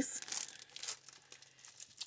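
Clear plastic packaging sleeve of a sticker sheet crinkling as it is handled and set aside. The crinkling is strongest in the first second, then thins to a few faint rustles.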